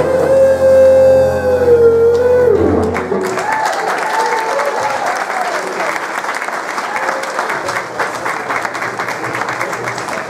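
Big band holding its closing chord, which ends with a downward bend about three seconds in, followed by audience applause.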